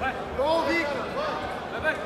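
Several men shouting over one another in a large arena hall: short, rising-and-falling calls, louder from about half a second in.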